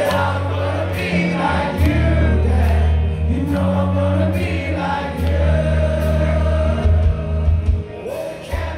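Live rock band playing, with a male lead vocalist singing into a microphone over bass guitar holding deep sustained notes and regular cymbal-like strokes, recorded from within the audience.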